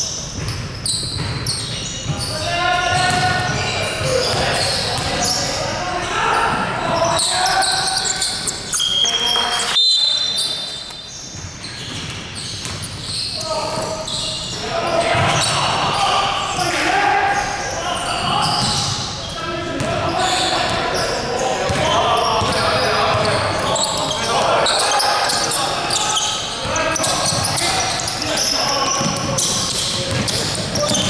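Basketball bouncing on a hardwood gym floor amid players' shouted voices, echoing in a large sports hall.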